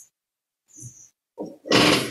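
A short, loud breath close to the microphone near the end, after a few faint soft rustles.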